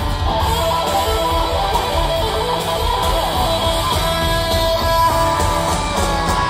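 A rock band playing live and loud, with strummed electric guitar chords to the fore over a heavy low end.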